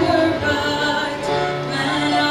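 A woman singing a worship song into a microphone over musical accompaniment, holding long notes.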